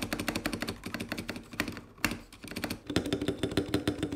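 Fast typing on the Epomaker Mini Cat 64, a mechanical keyboard with Epomaker Flamingo linear switches and dye-sub PBT keycaps in a stacked-acrylic case. After a brief pause about halfway through, typing goes on on a second 65% mechanical keyboard, with a deeper ring under the clicks.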